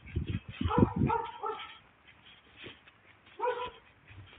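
A dog barking: a quick run of barks in the first half, then a pause and a single bark near the end, with low thuds under the first second.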